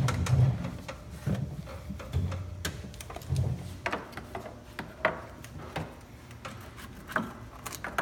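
Scattered light clicks and taps of hands working on wiring and plastic parts, with a few low thumps.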